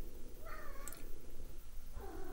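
A domestic cat meowing once, briefly, about half a second in, quieter than the nearby talk.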